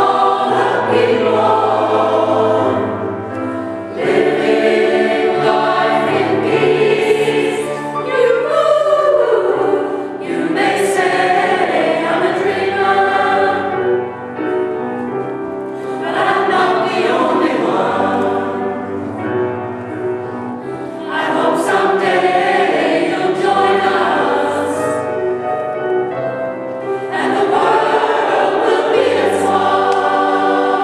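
Mixed choir of men's and women's voices singing in parts, sustained chords in phrases several seconds long with brief breaths between them.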